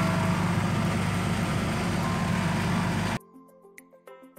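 Steady engine drone and road noise heard from inside a moving vehicle's cab, cut off abruptly about three seconds in and followed by soft music.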